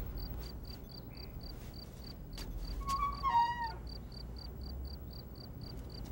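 Crickets chirping in a steady, even pulse of about four chirps a second. About halfway through comes one short, falling, voice-like call.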